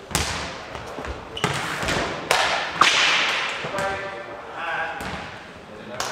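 Nohejbal ball being kicked and bouncing on a sports-hall floor during a rally: several sharp thuds, each ringing out in the hall's echo. A voice calls out briefly a little after the middle.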